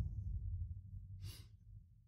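The low tail of an outro whoosh effect dies away to near silence, with one short soft hiss about a second in.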